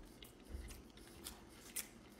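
Close-miked chewing of a mouthful of burrito bowl with shredded lettuce: a few faint, sharp crunches and mouth clicks, with a soft low thump about half a second in.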